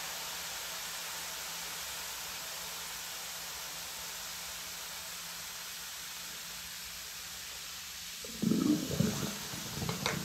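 Foam over a sink drain fizzing with a steady soft hiss, then about eight seconds in a louder, uneven gurgling as liquid runs down the drain.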